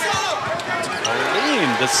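Basketball bouncing on a hardwood court during live play, a few sharp ball impacts.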